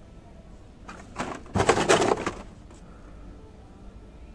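A burst of rustling and scraping about a second and a half long, starting about a second in: cardboard-and-plastic blister packs of toy diecast cars being handled and swapped on a shop peg.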